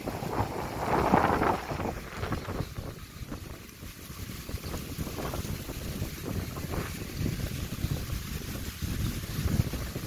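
Strong storm wind gusting through trees and buffeting the phone's microphone, a low rush with a stronger gust about a second in.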